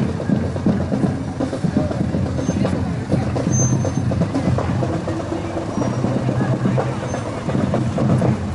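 Parade cars driving slowly past at close range, with music playing over the engines.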